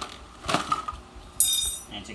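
Small pieces of costume jewelry clinking together as they are handled. A short knock comes about half a second in, then a sharp, bright clink that rings briefly near the end.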